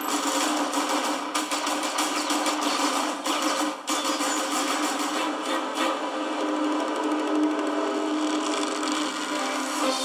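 A film trailer's soundtrack played back, with the bass cut away so it sounds thin. A rapid clatter of short hits runs over the score for the first few seconds, then gives way to steadier sustained music.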